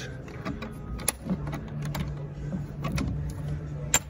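A boat's fiberglass anchor-locker hatch being unlatched and lifted by hand: scattered clicks and knocks, with a sharp click near the end, over a steady low hum.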